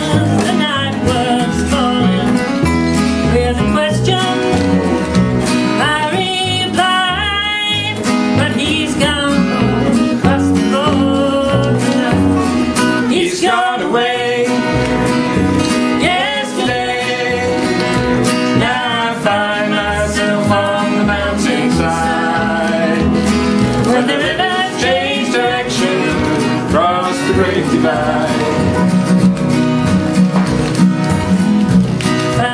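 A woman singing a folk song, accompanying herself on acoustic guitar, with a double bass playing low notes underneath.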